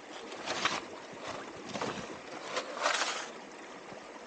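Short splashes in a shallow creek, three in four seconds, over the steady sound of running stream water.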